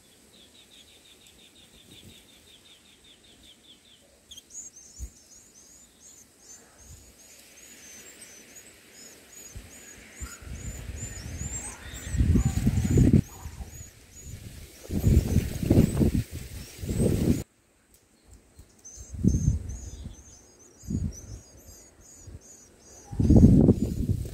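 A run of short high chirps, about three a second, from white-eye nestlings begging at the nest as an adult white-eye feeds them, after a short high trill at the start. From the middle on, loud low thumps and rumbles come and go and are the loudest sound.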